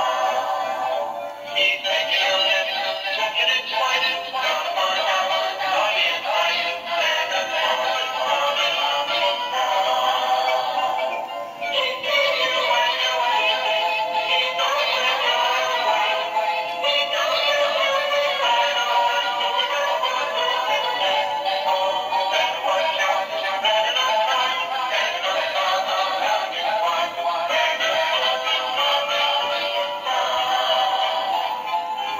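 Animated singing and dancing Christmas toys, a plush snowman and a tinsel Christmas tree, playing a recorded song with singing through their small built-in speakers. The sound is tinny, with almost no bass, and has brief breaks about 1.5 and 11.5 seconds in.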